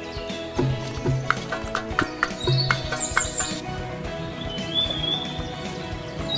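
Background music with high, bird-like chirps over it, and a quick run of sharp clicks or knocks between about one and two and a half seconds in.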